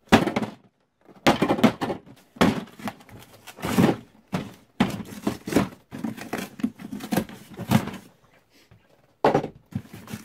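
Irregular thuds of a claw hammer striking a large cardboard box, breaking in its perforated push-in opening, about a dozen blows. Near the end the cardboard gives and tears.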